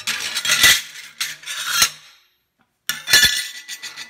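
Steel practice weld plates clinking, clacking and scraping as they are handled and shuffled on a metal table, with a few sharp clacks. The sound drops out briefly just past halfway.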